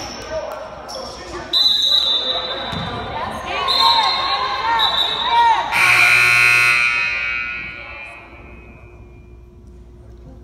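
Gym scoreboard horn sounding for about a second and a half, then ringing out in the hall as it fades. Before it come a few short high referee's whistle blasts over voices.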